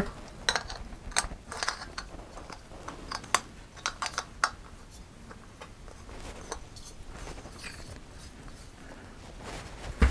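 Small clicks and scrapes of a gas canister being handled and screwed onto the threaded fitting of a stove's remote-feed hose, mostly in the first half.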